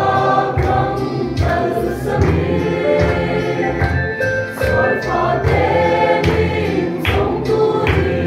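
Mixed choir of women and men singing a hymn in Mizo, several voice parts in harmony, sustained without a break.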